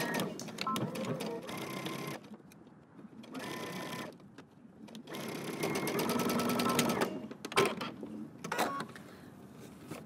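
Electric sewing machine stitching through knit fabric and twill tape in three runs, the last lasting about two seconds, with short stops between them as the seam is backstitched. A few sharp clicks follow near the end.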